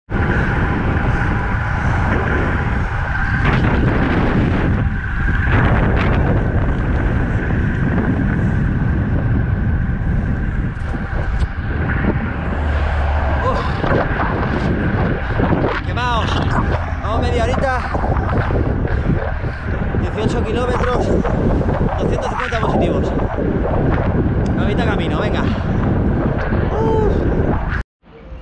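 Loud, steady wind rumble buffeting the microphone of a camera on a road bike being ridden at speed.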